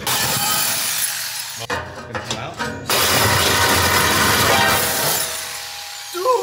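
Corded reciprocating saw cutting through a car's steel exhaust pipe: a harsh rasping buzz in two stretches, with a short pause about two seconds in.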